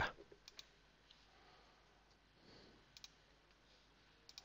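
Near silence, broken by a few faint computer-mouse clicks, the clearest about three seconds in.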